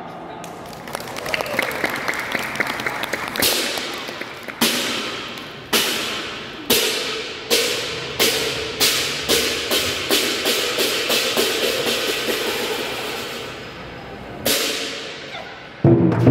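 Chinese war-drum troupe's hand cymbals and drums: crashes come about a second apart at first, then speed up into a fast roll that dies away. One more crash comes near the end.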